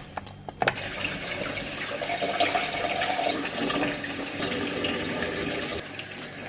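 Kitchen tap running into a stainless steel sink while hands are washed under the stream. The water comes on a little under a second in, after a few light clicks, and then runs steadily.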